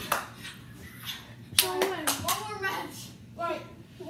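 Children's wordless shouts and calls during rough play, with two sharp smacks about a second and a half apart. The second smack is the loudest sound.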